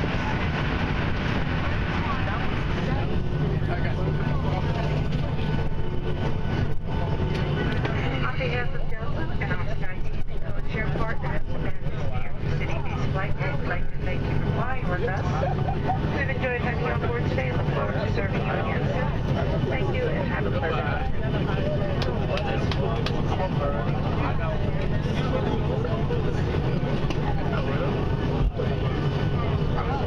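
Steady drone of a Boeing 757's engines and airflow heard inside the passenger cabin during the approach, with indistinct voices murmuring over it in the middle of the stretch.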